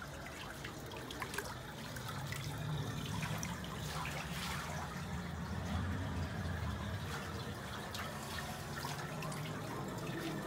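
Water trickling and dripping in a small heated hot tub, with small splashes and a low, steady rumble underneath.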